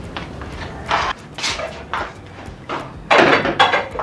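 Clatter of kitchen pots and dishes: a few short knocks and scrapes, then a louder, longer clatter about three seconds in.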